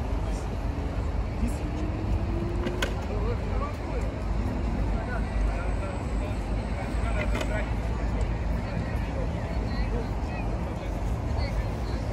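Outdoor park ambience: indistinct voices of people around, over a steady low rumble, with two sharp clicks about three and seven seconds in.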